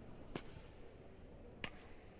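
Badminton racket strings struck twice: two sharp, ringing taps about a second and a quarter apart, as a freshly strung racket is tested.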